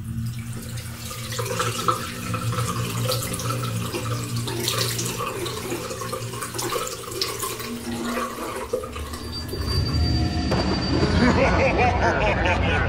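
A tap runs into a ceramic bathroom sink, the water splashing as hands are washed under it, over a low steady hum. Near the end a louder sound with wavering pitch comes in.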